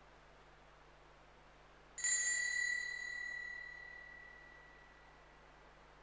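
A small brass altar bell struck once, giving a single bright ring that dies away over about three seconds.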